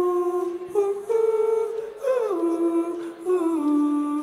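Unaccompanied wordless vocal: a single voice humming a melody in short phrases, sliding between notes.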